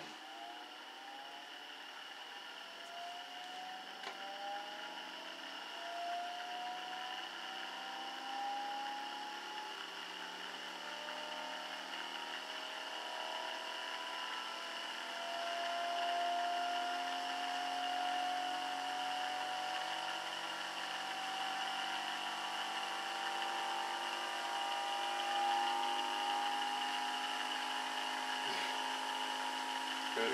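Homemade permanent-magnet rotor motor with switched drive coils, running on its front drive plate alone: a whirring tone that climbs slowly in pitch and grows louder as the rotor gathers speed, over a steady high whine. Driving the one plate sounds totally different from driving both plates.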